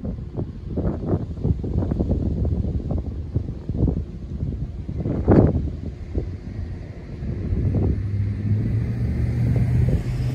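Wind buffeting the microphone in irregular gusts, the loudest about five seconds in. From about eight seconds a steady low vehicle engine hum sets in under it.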